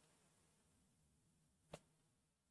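Near silence: room tone, broken once by a single faint click near the end.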